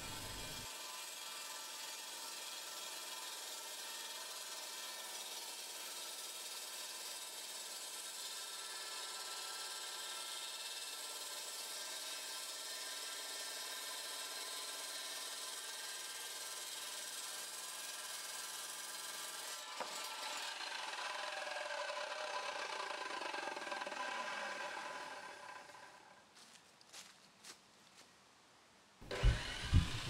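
Evolution Rage 2 chop saw with a diamond blade running steadily as it cuts through a steel-reinforced pre-stressed concrete lintel. About twenty seconds in the sound changes, then the motor winds down, falling in pitch, followed by a few faint clicks.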